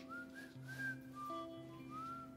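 Quiet background music: a whistled melody sliding between a few notes over soft held chords.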